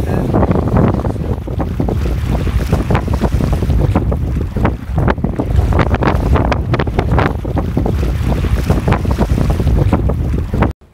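Loud wind buffeting the microphone in gusts, over water washing against a rocky shore.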